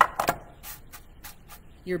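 A few short clicks and light knocks of kitchenware being handled: a metal baking pan shifted on the counter and a glass measuring cup of melted butter picked up. The sharpest knocks come right at the start, and lighter clicks follow through the rest.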